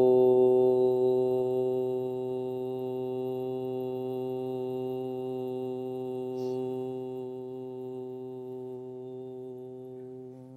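A man's voice holding one long, steady hum with lips closed, the closing 'mmm' of a chanted mantra, slowly fading away.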